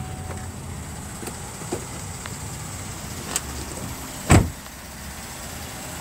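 A 2016 GMC Acadia's door slammed shut about four seconds in, a single loud knock, preceded by a few small clicks and knocks as someone climbs out. A low steady hum runs underneath.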